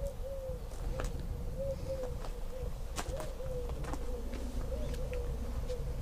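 A pigeon cooing in a run of low, wavering notes, over a steady low rumble and a few faint clicks.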